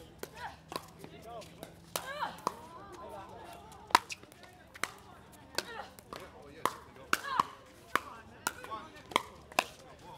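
Pickleball paddles striking a hard plastic ball again and again in a rally, a string of sharp, irregular pops with the loudest about four seconds in. Faint voices underneath.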